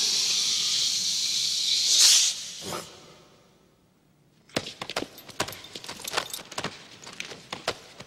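A loud, steady hiss that stops about two seconds in. After a near-silent pause, a run of sharp, irregular clicks and taps follows.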